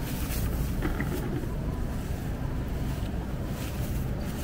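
Wire shopping cart rolling across a smooth store floor: a steady low rumble from its wheels, with a few light rattles from the basket.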